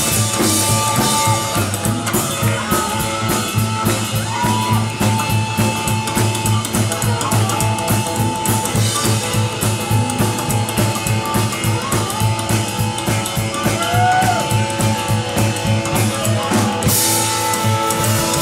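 Live band playing with drums, upright bass and electric guitar, and a harmonica carrying sustained, bending notes over a steady beat. A cymbal crash near the end.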